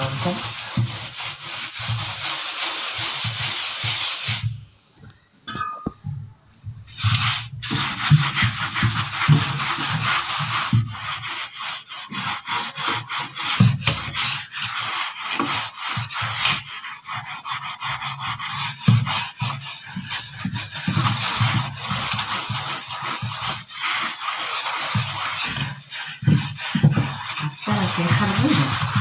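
A hand scrubbing a silver tray with a white cleaning paste in quick circular strokes, a steady gritty rubbing that works tarnish off the metal. The rubbing stops for about three seconds, starting about four and a half seconds in.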